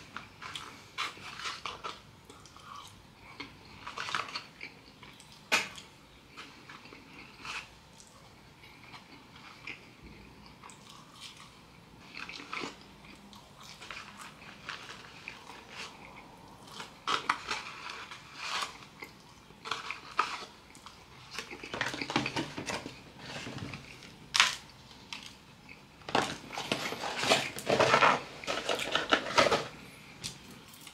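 A person chewing food, with scattered clicks and rustles from handling a paper food carton, and a louder stretch of rustling and crunching near the end.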